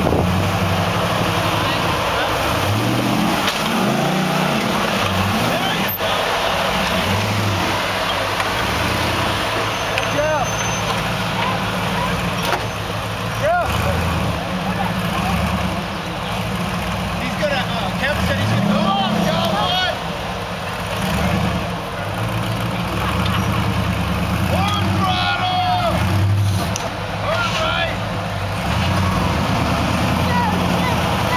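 Rock-crawler buggy's engine running and revving in repeated bursts under load as it climbs over granite boulders.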